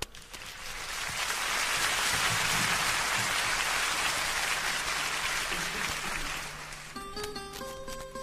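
Concert audience applauding, swelling over the first second and fading after about six seconds. About seven seconds in, the song's instrumental introduction starts with plucked-string notes.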